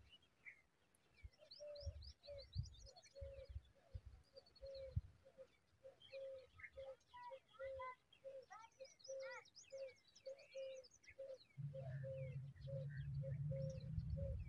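Wild birds calling: one bird repeats a low, short note evenly about twice a second, while others add high chirps and trills, thickest about halfway through. A low rumble comes in near the end.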